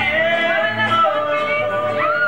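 Music: a singing voice holds one long note over instrumental backing.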